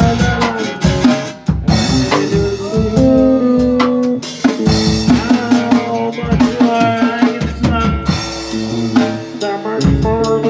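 A rock band plays an instrumental passage with no singing: guitars hold and bend notes over a full drum kit, with snare and bass drum keeping a steady beat.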